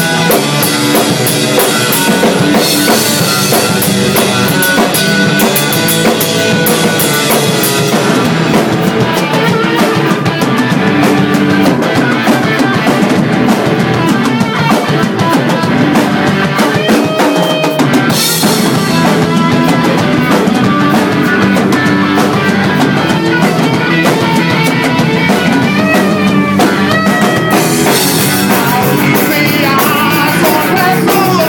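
Rock band playing live: drum kit with cymbals and electric guitar.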